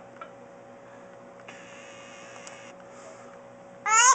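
A few seconds of near-quiet with a faint steady hum, then a baby suddenly bursts into loud crying just before the end.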